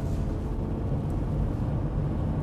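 Cabin noise inside a Chrysler Grand Voyager minivan under way: a steady low engine and road rumble as the driver accelerates toward about 60 km/h.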